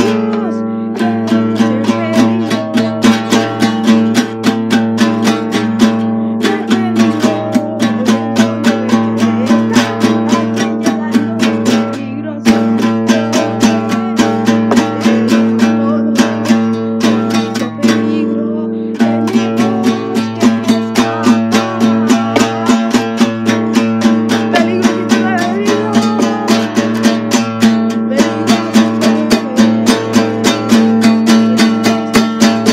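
Strummed acoustic guitar playing a song in a steady rhythm over a sustained low held note, with a few brief breaks in the strumming.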